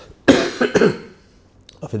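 A man coughing into his hand, a short fit of coughs starting about a quarter second in.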